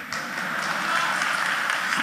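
Audience applauding, the clapping swelling gradually through the pause.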